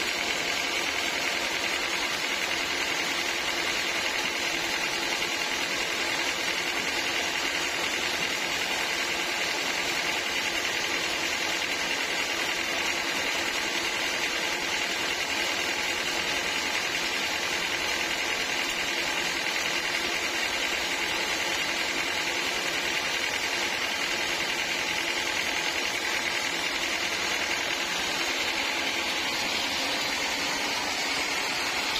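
Band sawmill running steadily, its motor and blade giving a constant mechanical sound that does not change.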